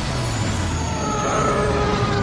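Film trailer sound effects: a loud, steady vehicle-like rumble with a low drone and a few held tones above it.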